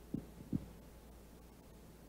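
A pause between words: a steady low hum, with two brief soft thumps about half a second apart near the start.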